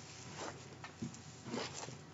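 Faint rustling and crinkling of a cellophane-wrapped pack of patterned paper being handled as the sheets are slid out, with a few light clicks and crackles toward the end.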